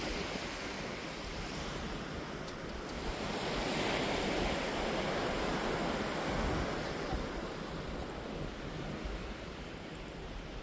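Sea surf washing onto a beach, a steady rushing that swells about halfway through, with low wind rumble on the microphone.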